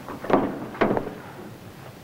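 Two short scuffing thumps about half a second apart as a man climbs out through a stock car's side window, his body and shoes knocking against the car body.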